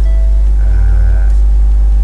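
Loud, steady low mains hum on the recording, with fainter steady tones above it and a brief faint higher tone about a second in.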